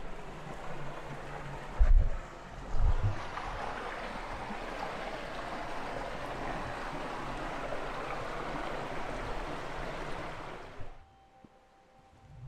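Shallow stream running over rocks in a steady rush, with two dull thumps about two and three seconds in. The water sound cuts off suddenly about a second before the end.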